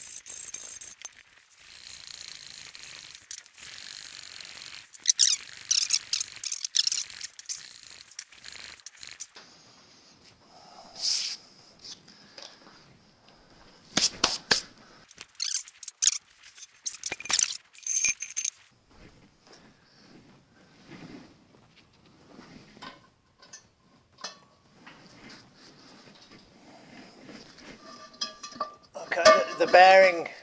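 Workshop handling of an early Ford steel torque tube and driveshaft: rubbing and rustling at first, then a cluster of sharp metal knocks and clinks about halfway through as the tube is picked up and fitted down over the upright driveshaft, with scattered lighter clicks after.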